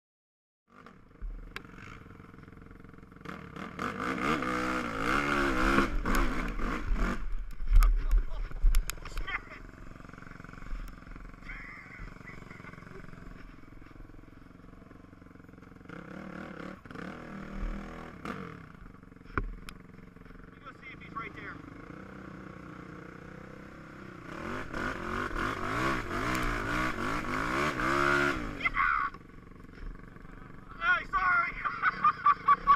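ATV (quad) engine running along a trail, revving up and down in two loud stretches, a few seconds in and again near the end, with quieter running between. A few sharp knocks sound during the first revving stretch.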